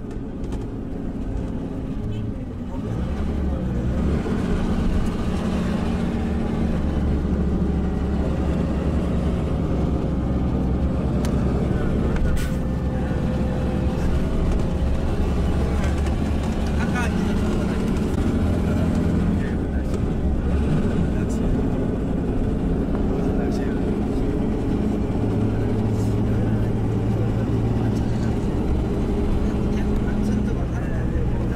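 Engine running and road noise heard from inside a moving tour bus, a steady low hum that grows louder over the first few seconds as the bus picks up speed.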